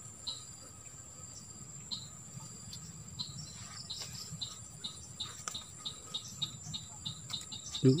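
Insects trilling in one steady, high-pitched tone, joined by a run of short chirps at a lower pitch that repeat about two or three times a second in the second half.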